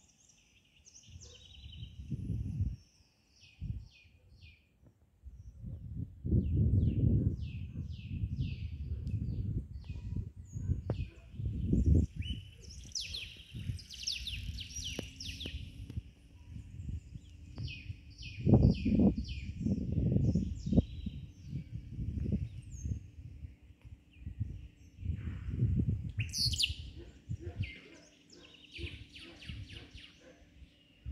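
Many small birds chirping and tweeting in short, high calls throughout, with irregular gusts of low rumbling noise that are the loudest sounds, several times.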